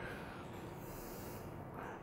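A quiet pause between sentences: faint room noise and a man's breathing, picked up close on his microphone.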